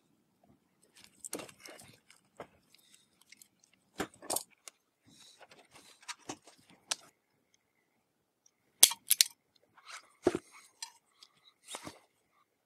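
Hand tools and insulated wire being handled during wiring work: soft rustling with scattered sharp clicks and clinks. The loudest is a quick cluster of clicks about nine seconds in.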